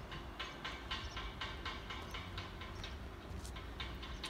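A rapid run of regular clicks or clacks, about four a second, thinning out near the end, over a steady low rumble.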